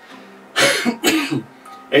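A man coughs twice in short succession, about half a second in, over faint steady background music.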